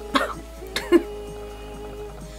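Two short coughs, about half a second apart, over steady background music.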